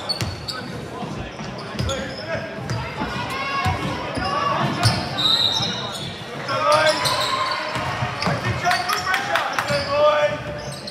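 A basketball being dribbled on a hardwood gym floor, thudding repeatedly with the hall's echo, under indistinct voices of players and spectators calling out during play.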